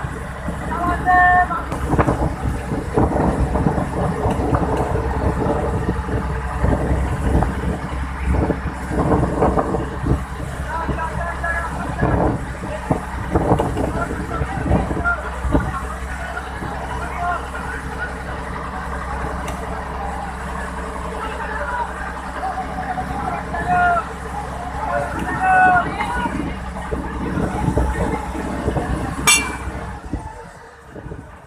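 A fishing boat's engine running steadily, a low drone under wind and rough-sea noise, with a sharp knock near the end.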